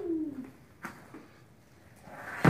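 The end of a man's long, drawn-out yell ("whaaat"), falling in pitch and fading out about half a second in, then a single short knock just under a second in.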